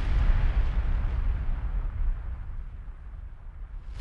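Cinematic boom sound effect for a logo animation: a deep rumble that slowly fades, then a short rushing burst just before the end.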